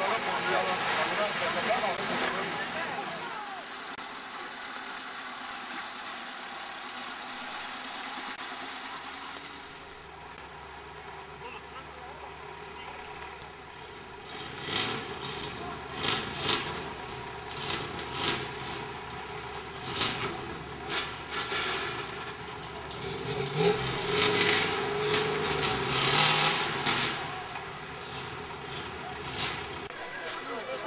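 Engines of autocross racing vehicles, loudest in the first few seconds as the racers climb a dirt hill, then a lower steady sound. In the second half come many short, sharp bursts.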